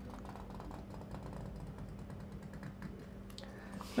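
Faint, irregular scratching of a calligraphy pen nib drawn across paper while letter strokes are written.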